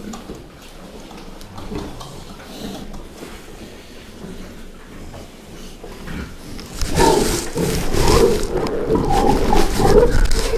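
A pen of large, nearly seven-month-old fattening pigs grunting and shuffling quietly. About seven seconds in they break into loud grunting and squealing, with hooves scuffling on the slatted floor, as they are disturbed by being handled for measuring.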